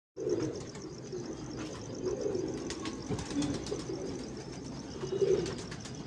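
Domestic pigeons cooing in a loft, low repeated coos loudest near the end, with a few sharp clicks and rustles among them.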